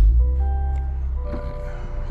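Music coming on through the car's audio system as the car is switched on, with a heavy bass that is loudest right at the start and several steady held notes over it.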